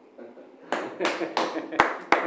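A small group of people applauding with scattered, uneven hand claps, starting after a brief pause.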